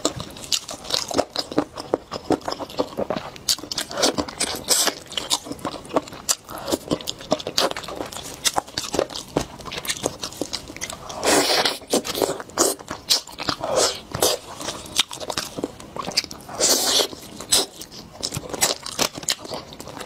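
Close-miked eating: a person chewing and biting sauce-coated chicken, with many small wet mouth clicks, and gloved hands tearing the meat apart. A few louder, longer rustling bursts come about halfway through and again near the three-quarter mark.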